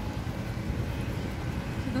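Steady low rumble of busy city-street traffic: cars, taxis and buses running in the road close by.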